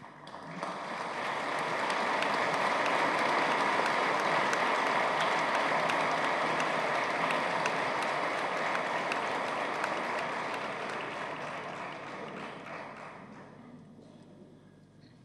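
Audience applauding. The clapping swells over the first couple of seconds, holds steady, then dies away over the last two seconds or so.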